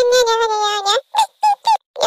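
A high-pitched, nasal honking sound held for about a second, then three short honks.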